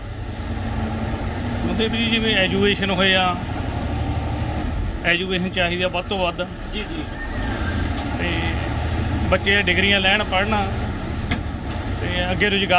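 Bus engine running with a steady low rumble, heard inside the bus cabin, while a man speaks over it in three short stretches.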